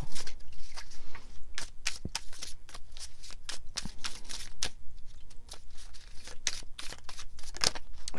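A tarot deck being shuffled by hand to pull a clarifying card: a quick, irregular run of card flicks and snaps.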